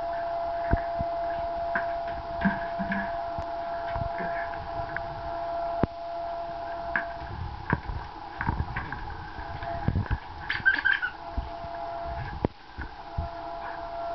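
A dog playing with a tennis ball on a hard floor: scattered taps and soft thumps from the ball and its claws, irregular and unhurried, over a steady high-pitched hum.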